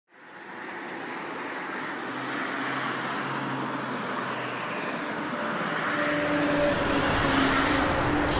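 Steady motorway traffic noise from a stream of passing cars and lorries, fading in from silence at the start and slowly growing louder, with a few faint steady hums running through it.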